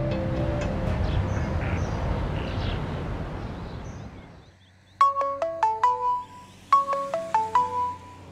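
Background music fading out, then a mobile phone ringing: a ringtone melody of quick notes, played twice.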